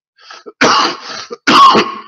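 A man coughing: two loud coughs about a second apart, the second the louder.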